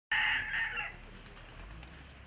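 A rooster crowing, the call ending about a second in, followed by quiet outdoor background.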